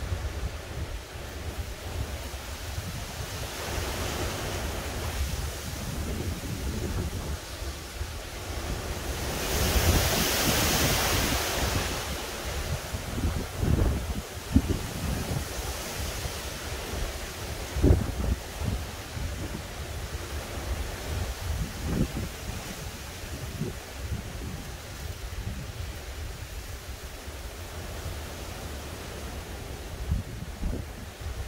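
Hurricane Ian's wind gusting through the trees in a steady rush, swelling into a stronger gust about ten seconds in. Wind buffets the microphone in low thumps, the loudest a little after the middle.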